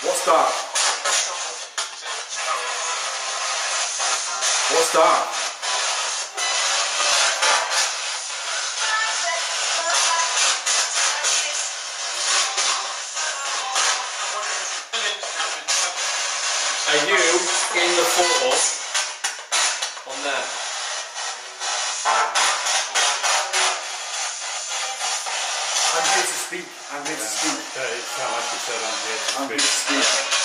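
Spirit box scanning through radio stations: steady hissing static chopped many times a second, with brief garbled fragments of voices breaking through about halfway and again near the end.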